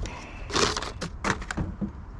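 Crumpled newspaper packing rustling and crinkling in several short bursts as a glass vase is handled and unwrapped.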